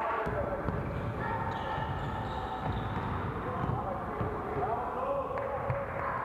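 Basketball game sound in a sports hall: a ball bouncing on the court, with players' voices and brief high squeaks.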